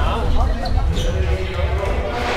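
Several voices talking over a steady deep rumble, with a couple of light clacks about a second in: skateboards rolling and knocking on the park's ramps and floor.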